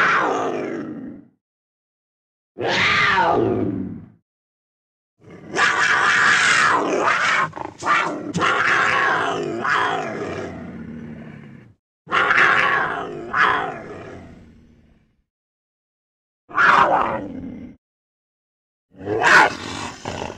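Cartoon black panther growls and roars, a string of separate calls cut apart by dead silence: about six, mostly falling in pitch, the longest running some six seconds in the middle.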